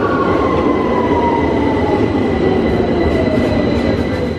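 London Underground Victoria line train pulling into the platform: a loud steady rumble with a motor whine that falls steadily in pitch as the train slows.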